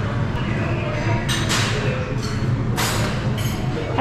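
Busy dining-room background: a steady low hum with faint music and voices, and a couple of short clatters of crockery or cutlery, about a second and a half in and again near three seconds.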